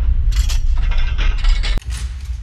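Bank-vault door lock mechanism sound effect: a run of metallic clicks and ratcheting clanks as the bolts and gears turn, over a low rumble, ending in a sharp clank near the end.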